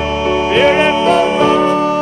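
Male vocal trio singing a country-gospel song in harmony, holding and sliding between sustained notes over instrumental accompaniment.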